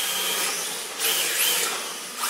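1/10 scale RC drift car on polished concrete: its electric motor whines, rising and falling in pitch with the throttle, over a steady hiss of the tyres sliding. The car gets louder about a second in as the throttle comes on.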